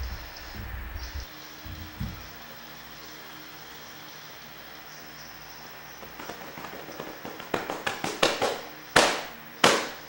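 A low rumble with a few thumps at first, then a quickening series of sharp cracks and pops that grow louder, ending in two loud bangs about half a second apart.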